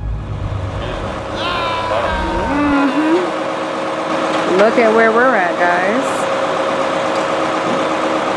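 Flatbed tow truck's engine running steadily, with voices over it from about a second and a half in; a low rumble fills the first few seconds.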